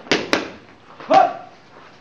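Boxing gloves smacking focus mitts: two quick hits just after the start and another about a second in, the last one with a short shout.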